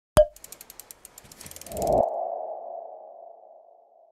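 Logo sting sound effect. A sharp click is followed by a run of fast ticks, then a swell builds to a hit about two seconds in and leaves a single ringing tone that fades away.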